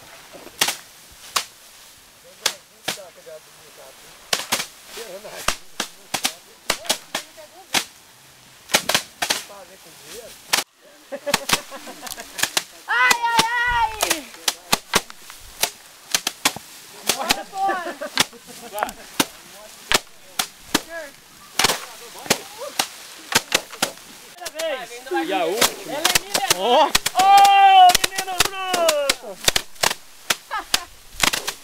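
Rice being threshed by hand: several people beat sheaves of rice against a slatted wooden bench, giving many sharp, irregular thwacks that overlap. Voices call out now and then.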